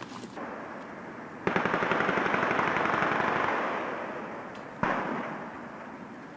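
A long burst of rapid automatic gunfire begins about a second and a half in and dies away over the next few seconds. A single sharp shot follows near the end and fades out.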